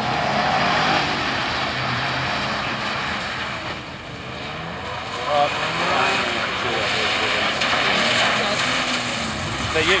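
A Holden Astra hatchback's engine running under throttle as the car slides on a wet skidpan, its tyres hissing and throwing spray through standing water. The engine note dips about four seconds in, then picks up again.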